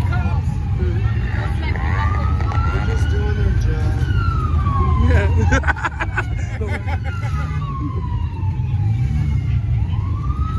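Emergency-vehicle siren wailing, its pitch climbing slowly and falling back in long cycles, over the steady low rumble of idling car engines. A quick run of sharp clicks cuts in about five and a half seconds in.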